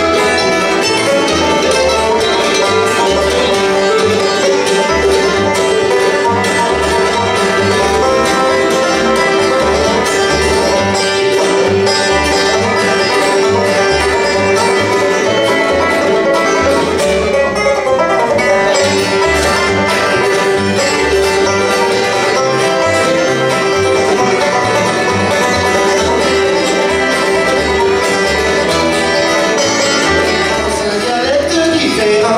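Bluegrass band playing an instrumental passage: banjo, acoustic guitar, mandolin, fiddle and upright bass, with the bass plucking a steady beat under a long held note.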